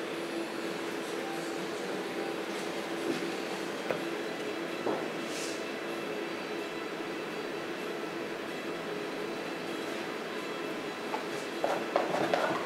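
Steady hum with a faint held tone throughout, and a few soft clicks about three to five seconds in.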